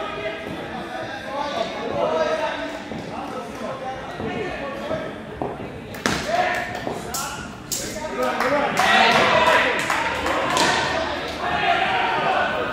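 Indoor cricket ball in play in an echoing netted hall: a sharp knock about six seconds in, as the ball is delivered to the batsman, followed by a run of further knocks and clicks.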